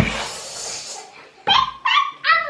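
A toddler's animal-like 'night howler' noises: a breathy, hissing roar about a second long, then short, very high-pitched squeals starting about one and a half seconds in.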